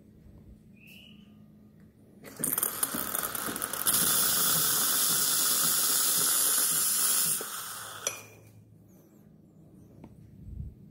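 Espresso machine steam wand opened into a cup to purge it before steaming milk. It sputters and crackles for about a second and a half, then gives a loud steady hiss, and is shut off about five seconds after it opened.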